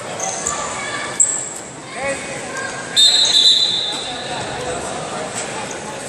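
A referee's whistle blast about three seconds in, a short, shrill high tone that stops the wrestling action. Before it there are brief high squeaks about a second in, with voices echoing in the sports hall.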